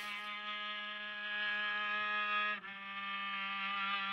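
Violin played underwater and picked up by hydrophones: two long, sustained bowed notes, the second starting a little past halfway, with a steady low tone held beneath both.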